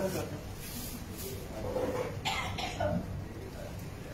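A person coughing: a few short coughs close together about two seconds in, with low voices around them.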